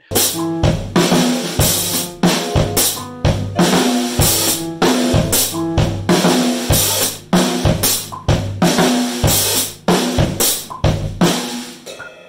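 Phone-recorded demo of a drum kit (kick, snare and cymbals) played along with a two-note piano figure that rocks back and forth. The drumming is loose and not always with the beat. The music stops just before the end.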